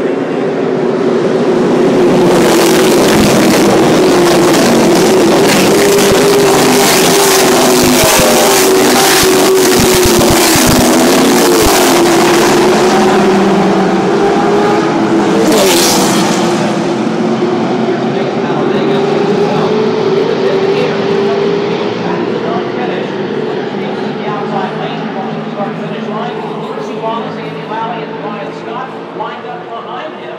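A pack of NASCAR Camping World Truck Series race trucks running at full throttle past the catchfence on a restart, their V8 engines very loud. The sound is loudest from about two seconds in to about fourteen, a single truck passes sharply near the middle, and then the pack fades slowly into the distance.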